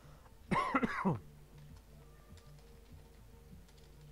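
A man's short laugh, a few quick falling bursts about half a second in, over in under a second, with faint background music underneath.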